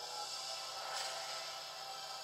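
Film trailer soundtrack heard through a small portable DVD player's speaker: soft music under a shimmering magic sparkle that swells about a second in, as a fairy's wand brings a wooden puppet to life.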